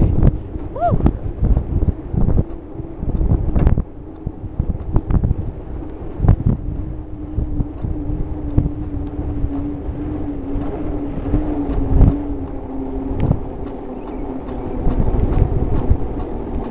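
Wind buffeting the microphone and the rumble of a bicycle's knobby tyre rolling on asphalt, broken by short knocks and rattles from bumps in the road. A steady low hum runs through the middle of the ride.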